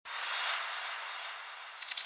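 A soft hiss of noise that swells over the first half-second and then slowly fades, with a few faint clicks near the end.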